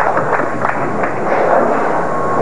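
Bowling-alley din: a continuous clatter of crowd murmur and pin and ball noise, with many short sharp knocks in it.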